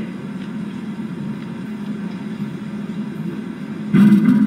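Steady low rumbling background noise with no clear pitch or rhythm, in a pause between spoken phrases.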